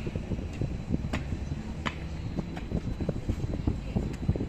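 Outdoor background with no speech: a steady low rumble of street and wind noise, with a few faint clicks.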